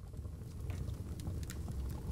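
A steady low rumble with scattered small crackles and pops, fading in over the first half second.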